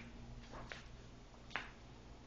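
A few faint, short clicks over a faint steady low hum; the sharpest click comes about one and a half seconds in.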